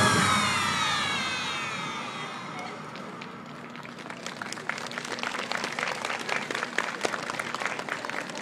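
A pop dance track ends with a falling sweep that fades away over about three seconds, then scattered audience clapping follows.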